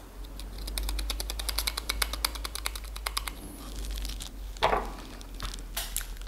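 Reagent powder being tapped from a folded paper sachet into a small glass sample vial: a quick run of light ticks, about nine a second, for a few seconds, then softer handling sounds and a brief rustle.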